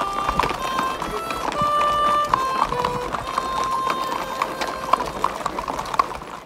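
Harmonica playing a slow melody of held notes that step from pitch to pitch, over the clip-clop of horses' hooves.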